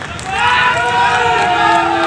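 A man's voice, amplified through the campaign vehicle's loudspeaker, starting about a third of a second in and holding one long drawn-out syllable, as a call to the crowd before slogans.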